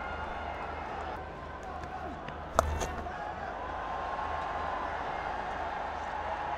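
Cricket stadium crowd noise, with a single sharp crack of bat hitting ball about two and a half seconds in and the crowd swelling a little after it.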